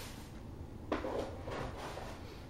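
A short scuffing rustle that starts suddenly about halfway through and runs in a few quick pulses for about a second, like fur or fabric being rubbed.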